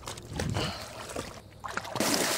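Shallow lake water sloshing with small irregular splashes as a dog wades along the edge.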